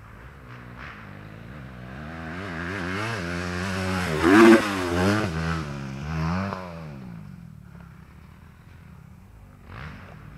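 An off-road engine passing by on the dirt track. It revs up and down as it goes, grows louder to a peak about four and a half seconds in, then fades away.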